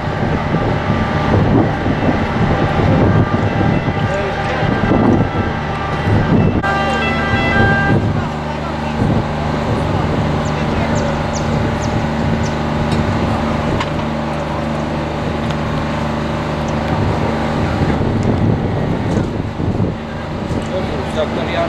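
Steady low hum of an idling vehicle engine under the talk of a crowd of onlookers; the sound changes abruptly about six and a half seconds in.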